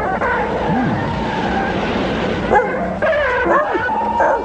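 Film monster cries, high and yelping with a wavering pitch, over a steady rushing noise that fades out about two and a half seconds in, when a new run of cries begins.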